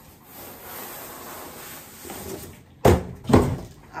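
Rustling of cardboard and the jacket's nylon shell as a puffer jacket is pulled out of its cardboard box, then two loud thumps about half a second apart near the end.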